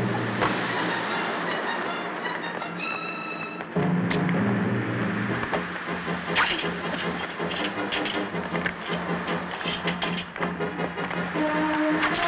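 Orchestral film score with held low notes and sharp, accented hits, coming in suddenly louder about four seconds in.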